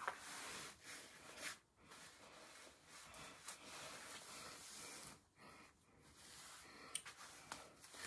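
Faint rustling and rubbing of a cap's fabric and braided synthetic hair as the hat wig is pulled on and adjusted by hand, in short uneven bursts.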